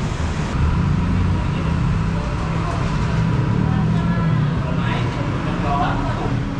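Steady road-traffic rumble from a city street, with faint background chatter.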